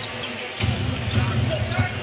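A basketball dribbled on a hardwood court, with short sharp ticks over steady arena crowd noise.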